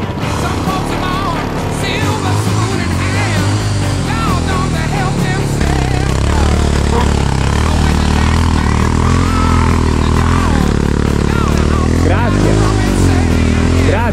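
Enduro motorcycle engine running, growing louder about halfway through and revving up and back down near the end, with music underneath.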